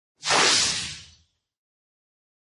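A whoosh sound effect: one swish of noise that starts about a fifth of a second in at full loudness and fades out over about a second.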